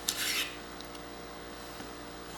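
A chef's knife drawn once through geoduck meat and onto a cutting board, a short scraping slice just after the start, over a steady low hum.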